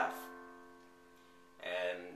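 Casio digital piano playing an F major chord, the four chord of the progression in C. It is struck once and left to ring, fading over about a second and a half, before a voice comes back in near the end.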